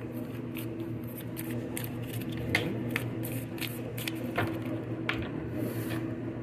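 A deck of reading cards being shuffled by hand: an irregular run of short card clicks and soft slaps, several a second.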